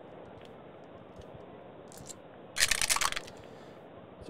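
Tabletop game dice (white and red six-sided dice with a twenty-sided die) rolled into a dice tray: a short clatter of clicks about two and a half seconds in, lasting about half a second.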